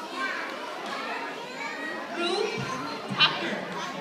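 Many children chattering at once in a large hall, a steady mixed babble of young voices, with one brief louder, higher voice about three seconds in.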